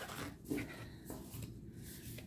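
Soft rustling and sliding of a deck of matte, gilt-edged oracle cards being shuffled by hand, with a brief, slightly louder sound about half a second in.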